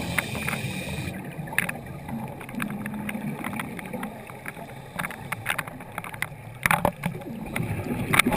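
Scuba breathing heard underwater through a camera housing: a hiss of regulator breath and bubbles in the first second, then low bubbling with scattered sharp clicks.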